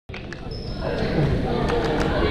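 Badminton hall sounds: a few sharp clicks of rackets striking shuttlecocks and people's voices, echoing in the large gym.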